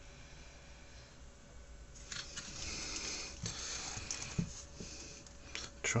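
Handling noise from the open metal case of a rework station being shifted on the bench: a rustling scrape starting about two seconds in and lasting about three seconds, with a couple of soft knocks.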